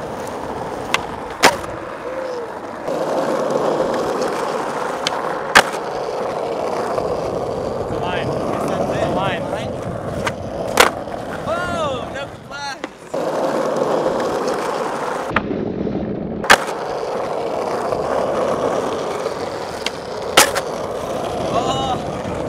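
Skateboard wheels rolling on rough asphalt with a steady grinding hum, broken by several sharp knocks from the board.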